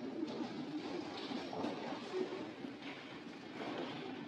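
Steady, indistinct background noise in a large church hall, with no clear speech or music.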